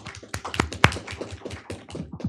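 A small group of people applauding, individual hand claps heard distinctly.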